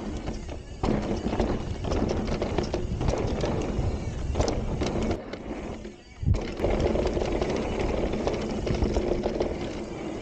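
Rattle and clatter of an e-mountain bike on a dirt singletrack descent: tyres rolling over roots and ruts, the frame and drivetrain knocking with many small impacts, and wind on the microphone. There is a brief lull about six seconds in, then a sharp thump.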